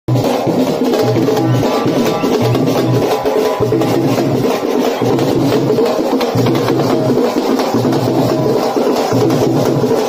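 Live Tamil folk drum ensemble playing a fast, steady, loud rhythm as karakattam dance accompaniment.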